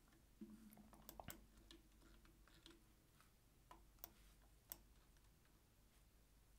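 Near silence: room tone with a few faint, scattered computer mouse clicks.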